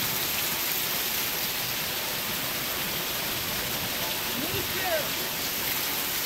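Heavy rain pouring down steadily.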